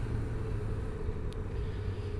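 Steady low background rumble with a constant low hum and no speech, with one faint click a little past halfway.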